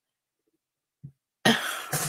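A woman coughing: a sudden loud burst about a second and a half in, after near silence.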